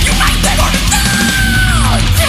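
Thrash metal recording with guitar, bass and drums playing loud and steady. A high held note enters about halfway through and slides down in pitch near the end.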